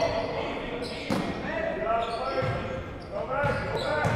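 A basketball being dribbled on a hardwood gym floor, a few sharp bounces echoing in the hall, with players calling out faintly.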